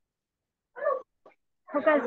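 Mostly speech: a pause, then one short voiced sound about a second in, then a man saying "okay" near the end.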